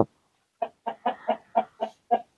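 A hen clucking: a quick run of short clucks, about four or five a second, starting about half a second in.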